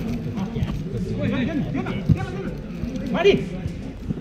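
Players shouting and calling to each other during a futsal game, with one sharp rising shout about three seconds in.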